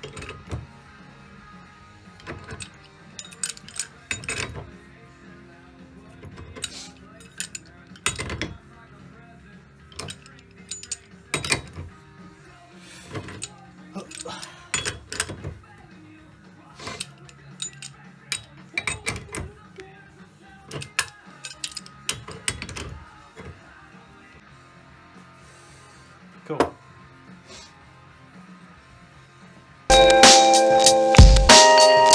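Irregular sharp metal clanks and knocks of hand tools, a pipe wrench and a steel bar, working a seized front wheel hub and its old bearing clamped in a steel bench vice. The knocks come every second or two and die away in the last few seconds.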